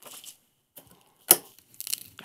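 Glass clip-top jar being handled and set down on a table, with small scrapes and rustles, one sharp click a little past halfway and a few lighter clicks near the end.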